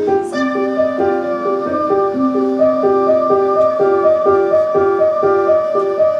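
Electronic keyboard with a piano sound playing a repeating figure of notes, about two a second, with a long high note held over it.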